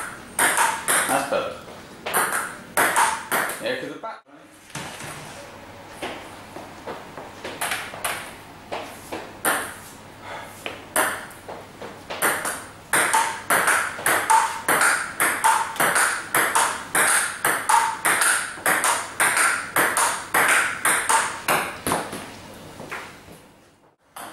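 Table tennis balls clicking off bats and the table in a fast, even run of hits, roughly two a second, as forehand drives are practised. The run breaks off briefly about four seconds in.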